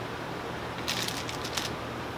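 Low steady room noise with a short run of light crackling clicks about a second in, like something small being handled.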